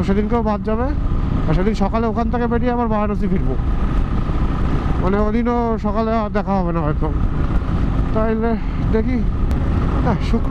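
Steady low rumble of wind and a Royal Enfield Thunderbird's single-cylinder engine at highway cruising speed, with a man talking over it in four short stretches.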